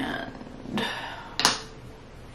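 Two short clicks of a small cosmetic jar of eye cream being handled, one about three quarters of a second in and a sharper one about a second and a half in.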